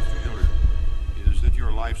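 Deep, heartbeat-like thudding pulse from a trailer's sound design, repeating irregularly a few times a second. Sustained music tones fade out at the start, and a man's voice comes in over the pulse in the second half.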